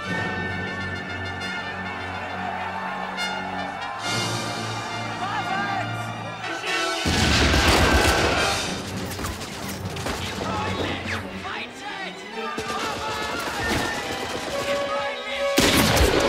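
Film score music, then about seven seconds in a loud explosion and a few seconds of battle noise like gunfire and blasts, with another sharp blast near the end: a wartime bombardment scene.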